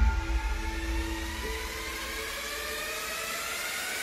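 Cinematic sound design: the deep bass tail of an impact hit fades out under a few held notes, while a rising riser whoosh climbs steadily in pitch and cuts off suddenly at the end.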